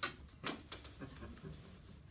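A person articulating a trumpet rhythm with the mouth in short, breathy, hissed syllables: an uneven run of quick, sharp clicks and hisses, loudest about half a second in and coming faster through the second half.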